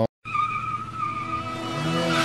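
A tyre-squeal sound effect for a drifting car: a steady high screech over a hiss that cuts in suddenly and grows louder, with music building underneath.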